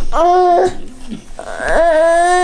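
Toddler whining: two drawn-out, high-pitched calls, each rising at the start and then held level, the second starting about a second and a half in.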